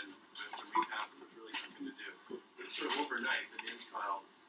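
Irregular clinking and clattering, like dishes and cutlery being handled, with one sharp clink about one and a half seconds in, over a faint low murmur.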